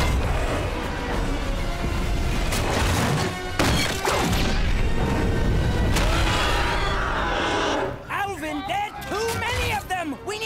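Animated-film soundtrack: music over heavy crashes and a deep rumble of destruction. Sharp impacts fall around two and three and a half seconds in. Near the end a run of short, high, rising-and-falling cries takes over.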